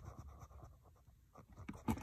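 Faint scratching and small ticks of a center punch's point being set on a paper template over a metal panel, with a sharper tick near the end.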